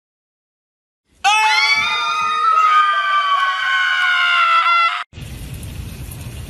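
A woman's long, loud, high-pitched scream, starting about a second in and held for about four seconds with a slight fall in pitch before it cuts off abruptly.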